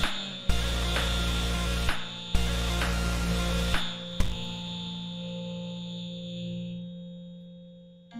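Loop-station beatbox music with heavy sub-bass pulses, each starting on a sharp hit. About four seconds in the beat drops out, leaving a held synth-like tone that fades away as the routine ends.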